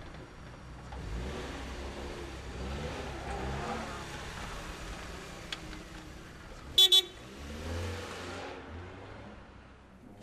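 Small sedan's engine running as the car pulls away, fading out near the end. Just before seven seconds in, a quick double toot of the car horn is the loudest sound.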